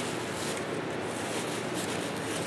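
A man chewing a bite of croissant-wrapped sausage, soft and faint, over a steady background hiss.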